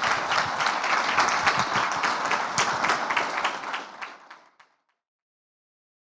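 Audience applause, dense clapping that fades away about four and a half seconds in, followed by silence.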